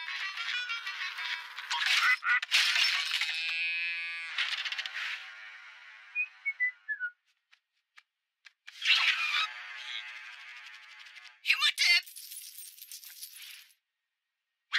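Cartoon soundtrack: music and comic sound effects with wordless character vocalizations, including a short run of falling notes about halfway through and a pause a little after.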